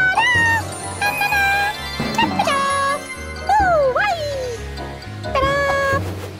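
Cartoon background music with a steady low beat, over a cartoon cat's voiced meows, one long falling meow about three and a half seconds in.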